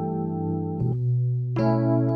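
Digital keyboard playing slow held chords, with a change of chord and bass note just before halfway and a fresh chord struck about a second and a half in.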